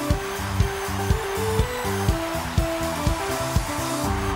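Live pop-worship band playing an instrumental passage with no singing: sustained keyboard chords over a steady drum beat, about two beats a second, with a constant wash of hiss-like noise underneath.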